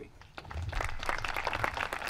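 Audience applauding, starting about half a second in.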